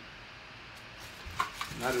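Paper rustling and crinkling as tissue paper and a card are handled in a cardboard box, starting about a second in, with two small sharp clicks.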